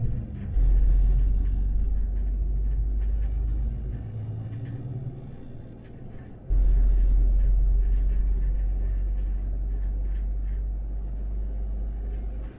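MAN Lion's City articulated city bus heard from the driver's cab as it gains speed on an open road: a deep rumble of drivetrain and road noise. The rumble cuts in sharply about half a second in, eases off around four seconds, and cuts in hard again after six seconds.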